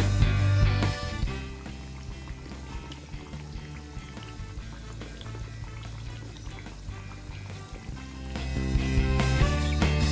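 Background music that drops away for about seven seconds in the middle. In the gap, coconut biscuits bubble and sizzle as they deep-fry in hot oil in a kadhai.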